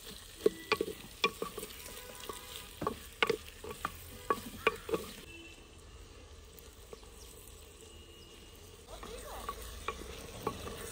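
Onions and garlic frying in hot oil in an earthenware handi, a metal spoon knocking and scraping against the clay pot as they are stirred over a steady sizzle. About halfway through the stirring stops and only the softer sizzle is left, then the knocks start again near the end.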